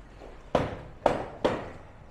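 Three sharp knocks about half a second apart, each dying away quickly.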